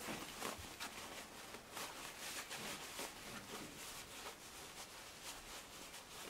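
Faint, irregular rustling and rubbing of fabric as a sewn zippered pouch is worked right side out through its turning gap by hand.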